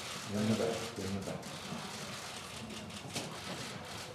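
Scattered sharp clicks of press photographers' camera shutters during a group photo, the loudest about three seconds in, over a steady room background noise. A man's voice calls out briefly at the start.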